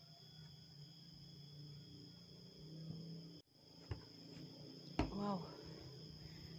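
Steady high-pitched insect chorus with a few knocks of footsteps on wooden stairs and planks. About five seconds in, a sharper knock on the wood and a short vocal sound.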